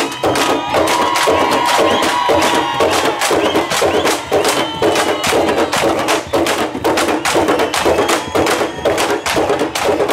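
Candombe drums (tambores: chico, repique and piano) played with hand and stick in a dense, driving rhythm, with sharp stick clicks on the wooden shells. A few held higher tones ride over the drumming in the first three seconds.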